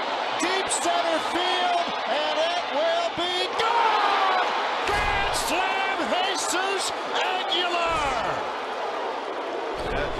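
Baseball television broadcast of a home run: a play-by-play announcer's voice over a stadium crowd.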